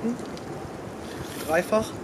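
Steady wind noise on the microphone, with a brief spoken syllable near the end.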